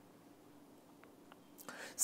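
Near silence: faint room tone with a low steady hum, two faint ticks about a second in, and a soft breath near the end.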